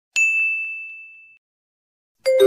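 A single bright, high ding sound effect marking a correct quiz answer, struck once and fading out over about a second.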